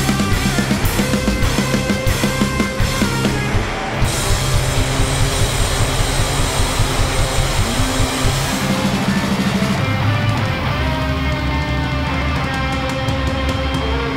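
A punk rock band playing loud and live in an instrumental passage: distorted electric guitars, bass and drums. From about four seconds in, the cymbals crash almost continuously over a steady driving beat.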